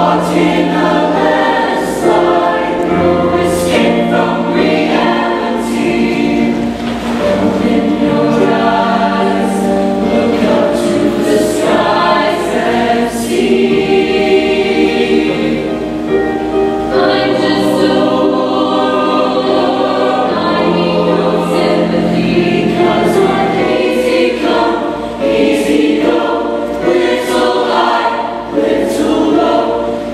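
Mixed-voice show choir singing a song, with sustained low notes under the changing sung lines.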